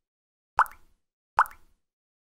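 Two short, identical pop sound effects, just under a second apart, marking the clicks on the animated subscribe and notification-bell buttons.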